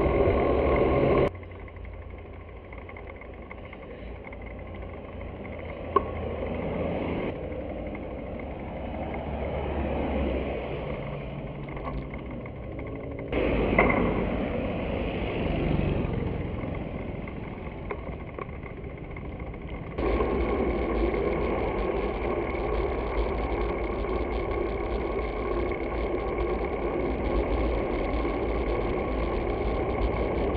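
Traffic and road noise heard from a moving bicycle, with motor vehicles passing and wind on the action camera's microphone. The sound jumps abruptly three times as separate clips are joined: about a second in, about thirteen seconds in, and at twenty seconds.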